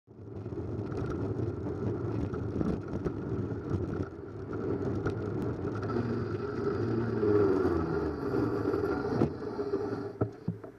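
Steady wind and road rush on a cyclist's head camera while riding. A motor vehicle's engine rises and is loudest about seven seconds in, as traffic passes close.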